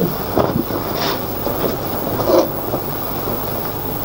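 Steady rumbling hiss of a worn old film or tape soundtrack, with a few faint brief knocks in it.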